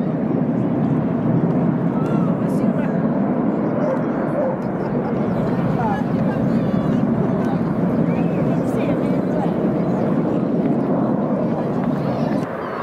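Steady jet noise from the Red Arrows' BAE Hawk T1 jets flying a display, with people's voices mixed in.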